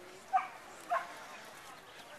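A dog barking twice, two short sharp barks a little over half a second apart.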